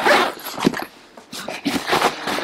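Fabric rustling and bumping as a new nylon disc golf bag is handled and turned over, in a series of uneven noisy bursts.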